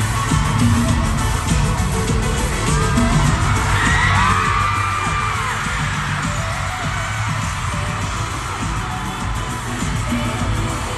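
Live pop band playing loudly in an arena, heard through a phone microphone, with heavy bass throughout. A burst of high crowd screams and whoops rises and falls about four to five seconds in.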